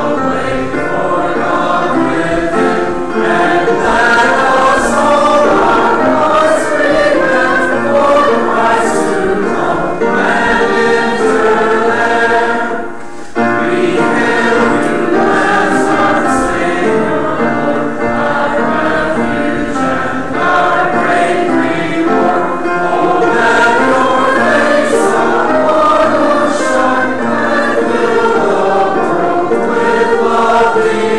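Church choir and congregation singing a hymn together, with a short break about halfway through.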